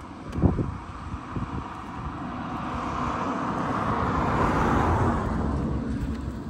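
A car passing along the street, its tyre and engine noise building up and fading away again, loudest about four to five seconds in. Wind buffets the microphone throughout, with a strong gust about half a second in.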